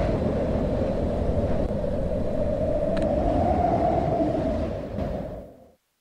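Steady low rumbling noise with a murky drone in it, fading out a little after five seconds in.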